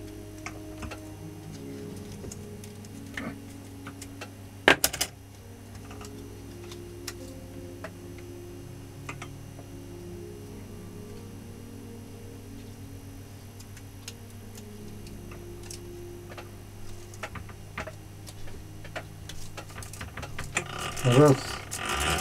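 Quiet background music with a steady electrical hum under it. Scattered light clicks and ticks come from copper winding wire being worked by hand into the slots of an angle-grinder armature, with one louder double click about five seconds in.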